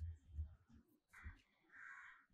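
A crow cawing faintly, twice in the second half, over low soft thuds of a hand working crumbly wheat-flour dough in a steel plate.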